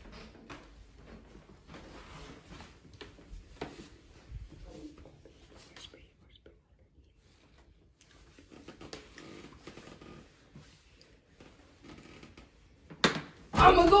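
Soft whispering voices in a small room, with a near-quiet stretch in the middle. About a second before the end, loud voices break out suddenly.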